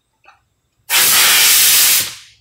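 Compressed-air blow gun giving a loud, steady hiss that starts about a second in, blowing out a head-bolt hole in the aluminium engine block.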